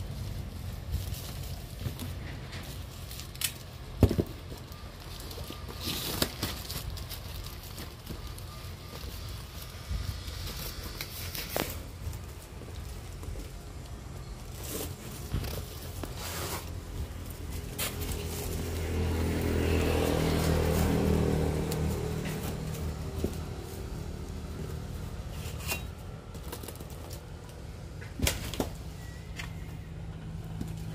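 Plastic rope and taped cardboard parcels being handled as the rope is wrapped and tied: scattered rustles, crackles and knocks. About two-thirds of the way in, an engine swells and fades, as of a motor vehicle passing.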